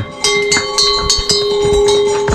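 Bells on passing pack donkeys ringing with a steady, sustained tone, with the uneven knocks of hooves on the stony lane.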